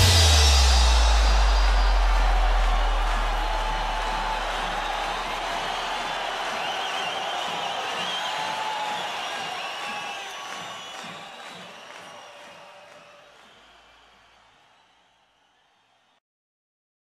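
The music stops, leaving a low bass note that rings on and dies away over several seconds. Under it is a crowd cheering, with some whoops, which fades out gradually over about fourteen seconds.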